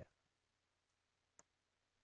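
Near silence while the microphone is muted, broken by one faint click about a second and a half in.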